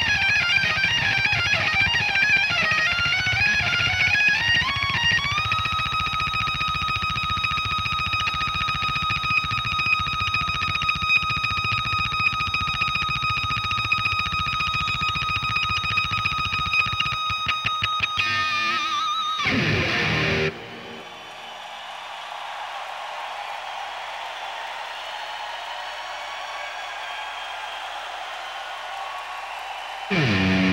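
Distorted electric guitar played solo and loud: a run of quick notes, then a single note held with long sustain for about twelve seconds. The note dives steeply down in pitch around eighteen seconds in. After that the sound drops to a quieter, even hazy wash until a loud new attack right at the end.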